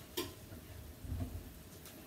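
A quiet kitchen with a sharp click shortly after the start, then a few soft low knocks about a second in.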